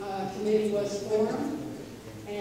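A person speaking: continuous talk.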